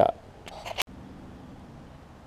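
Low background noise with a few faint handling sounds, then a single sharp click a little under a second in where the recording is cut, followed by quiet, steady background noise.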